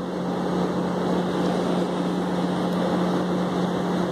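A boat's motor running steadily, a constant low hum over an even wash of noise.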